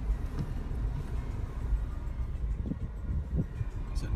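Steady low rumble of a car engine idling, heard inside the cabin, with a few faint knocks from a handheld phone moving about.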